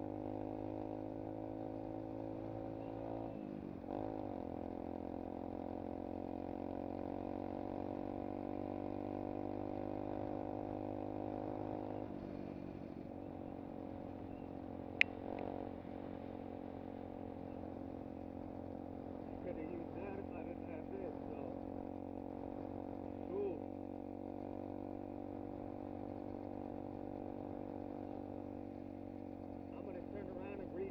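Single-cylinder four-stroke engine of a 125cc SSR pit bike running under way at a steady cruising speed. Its pitch slowly rises as it pulls, then drops suddenly about twelve seconds in and holds steady at the lower pitch. A single sharp click sounds a few seconds after the drop.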